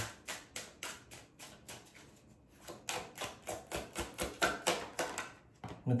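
Tarot cards being shuffled by hand: a run of quick light taps, about four a second, with a short pause about two seconds in.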